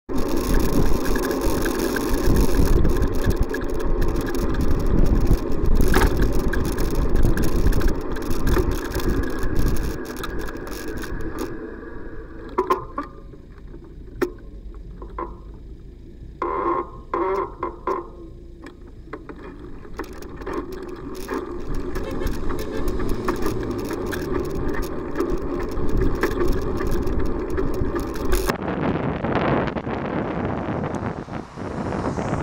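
Car engines and traffic running in a queue at a red light, with several short car horn blasts in the middle. Near the end, wind rushes over the microphone as the cycle moves off.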